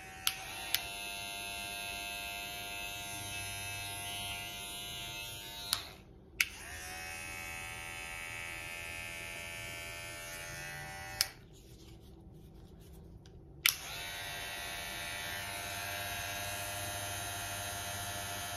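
Cordless hair clippers running with a steady buzz, switched off and on with sharp clicks about six seconds in and again from about eleven to nearly fourteen seconds. This is one clipper's running sound compared with the other's: the gold all-metal Suprent, which runs very quiet, against a Caliber clipper.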